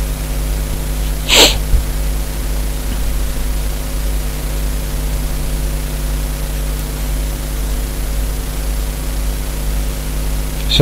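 Steady microphone hiss with a low electrical hum. About one and a half seconds in comes a single short breathy burst.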